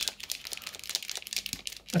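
Steel mixing ball rattling inside an acrylic paint marker as the marker is shaken by hand: a quick, irregular run of clicks.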